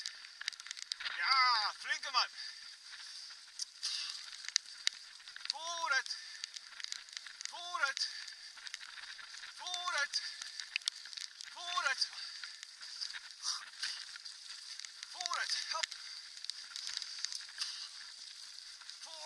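Bicycle tyres rolling fast over a leaf-strewn dirt trail, a steady high hiss with crackle. Short voice calls that fall in pitch come about every two seconds.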